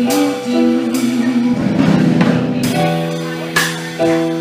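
Live jazz band playing: a saxophone carries a held, stepping melody over keyboard and drums, with a few sharp cymbal crashes a second or two apart.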